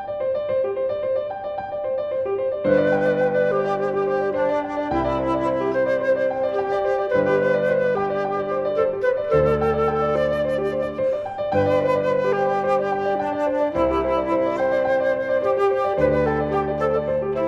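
Flute and piano playing a classical chamber piece: a repeated figure in the upper register, with low piano chords entering about three seconds in and changing every two seconds or so.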